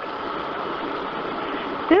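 Steady engine and running noise of a Kyoto City Bus, heard inside the passenger cabin during a gap in the recorded announcement. A woman's recorded announcement voice starts again at the very end.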